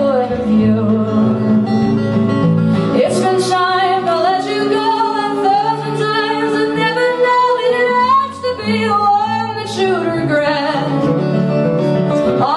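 Live acoustic band: acoustic guitars strummed with a woman singing the lead melody.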